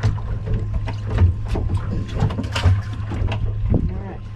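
Water splashing and slapping against a small fishing boat's hull, with scattered knocks on the boat, as a fish is hauled over the side, over a steady low hum.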